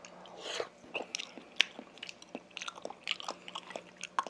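A person chewing a mouthful of raw salmon sashimi, close to the microphone: a run of short, irregular mouth clicks.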